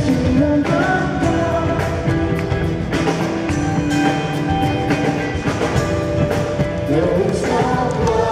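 Live rock band performing, with a male lead vocal singing over keyboards and drums, recorded from within the arena audience.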